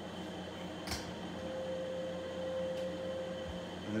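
Steady room hum with a faint held tone, and a sharp click of poker chips knocking together about a second in as a stack is lifted off the felt table.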